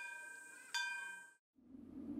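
A small metal bell struck twice, about a second apart, each strike ringing with several bell-like overtones and fading; the sound cuts off abruptly after the second. A low steady hum begins near the end.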